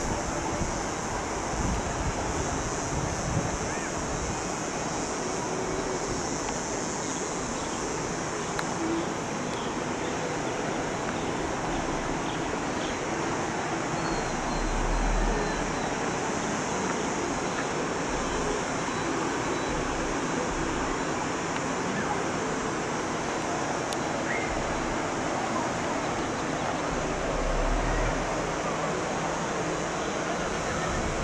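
Steady outdoor rushing noise with a hiss high up, and low wind buffets on the microphone about halfway and again near the end.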